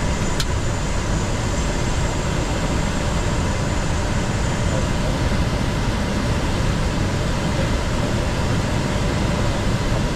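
Steady in-flight cockpit noise of a Gulfstream G650 business jet: an even hiss of air and aircraft systems with a faint high whine. One short click comes about half a second in.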